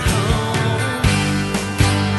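Folk-rock song playing: a full band with sharp drum hits over sustained bass and chords, in a passage with no clear vocal.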